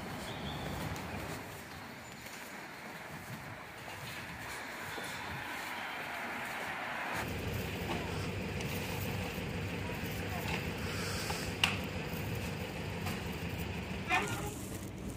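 Street ambience: a steady hum of traffic with indistinct voices, growing louder and deeper about halfway through, and one sharp click late on.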